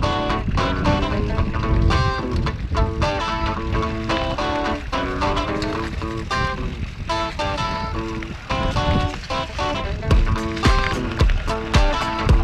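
Background music: a melody of stepped, held notes over a steady beat, with the beat hitting harder for the last couple of seconds.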